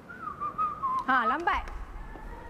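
A person whistling a short, wavering tune that drifts down in pitch, followed about a second in by a brief voiced call that bends up and down.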